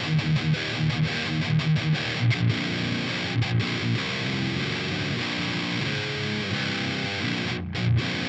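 Electric guitar played through the Otto Audio 1111 amp-sim plugin with the gain at seven, giving a heavily distorted, high-gain metal tone. The riff opens with quick, choppy notes and then moves to longer held notes.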